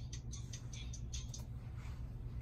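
Faint, tinny music leaking from earbuds: quick hi-hat-like ticks, about five a second, over a steady low hum. The ticks fade out about three quarters of the way through.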